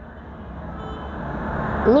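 Motor vehicle noise, a steady rumbling haze growing louder over about two seconds as it approaches; a voice cuts in at the very end.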